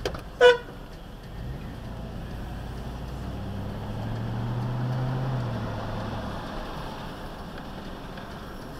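A single short car horn toot about half a second in, the loudest sound here, just after a sharp click. Then a car engine pulls away from a stop, its low hum rising to a peak about five seconds in and easing off again.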